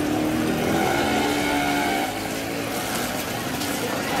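Busy street noise with a motor vehicle's engine running, most prominent in the first two seconds, over a background of voices and general bustle.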